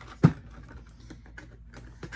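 Hands handling a Funko Pop vinyl figure and its cardboard box and plastic insert: one sharp knock about a quarter second in, then a run of small clicks and taps.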